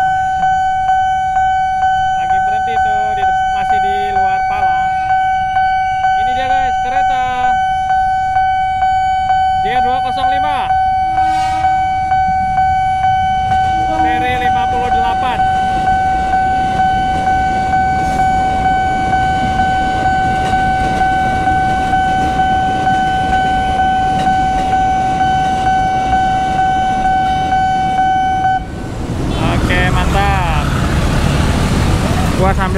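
Railway level-crossing warning alarm sounding a steady pulsing tone while an electric commuter train passes with a rising rumble of wheels on rails; the alarm cuts off suddenly near the end as the barriers go up.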